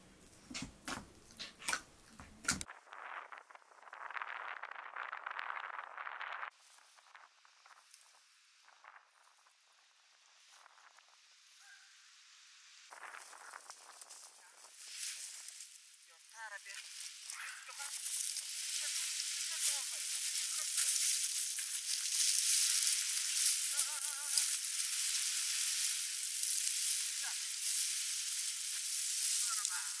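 Rustling and crackling of a big bundle of cut, drying plants being hoisted and carried on the back, growing into a steady crackle in the second half. In the first couple of seconds, short knocks of dough being kneaded in a metal bowl.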